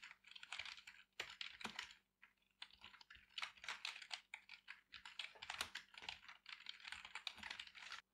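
Faint typing on a computer keyboard: a quick irregular run of key clicks with brief pauses.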